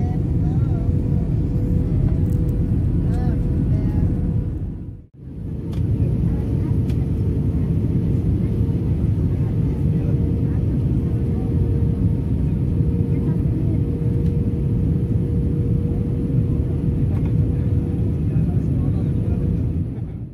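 Airliner cabin noise in flight: a loud, steady low rumble of engines and airflow with a constant hum over it, cutting out briefly about five seconds in.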